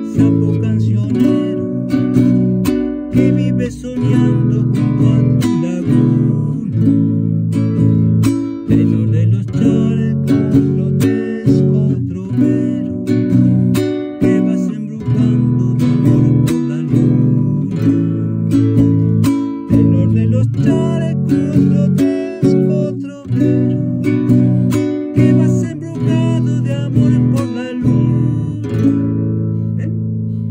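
Nylon-string classical guitar strummed in the zamba rhythm: a repeating five-stroke pattern of thumb down, up, down, a muted slap on the strings (chasquido), and down, moving through the song's chords. The playing is steady and even, and it stops near the end.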